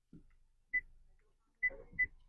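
Touch-feedback beeps from a ZX10+ Android car head unit's touchscreen as it is tapped: three short high beeps, the last two close together near the end, with soft taps of the finger on the screen.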